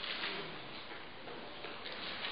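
Felt-tip marker scratching across flip-chart paper in short drawing strokes.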